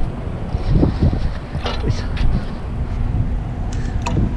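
Wind buffeting the microphone in a low, uneven rumble. A few short clicks or rustles come about halfway through, and a faint steady hum joins them.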